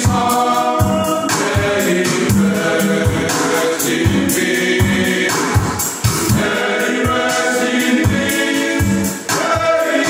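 A men's choir singing a hymn together, accompanied by two acoustic guitars strummed in a steady rhythm.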